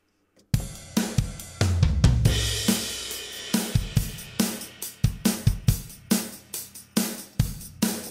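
A drum kit part from Logic Pro X's SoCal kit playing back through the Logic Compressor, with kick, snare, hi-hat and a cymbal wash. It starts about half a second in and runs as a steady beat.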